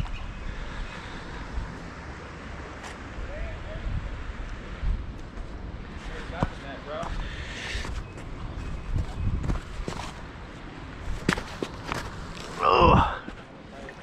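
Footsteps and rustling handling noise as an angler moves along a stony creek bank while playing a hooked trout, with scattered soft clicks. Brief voices come in about halfway through, and a louder shout comes near the end.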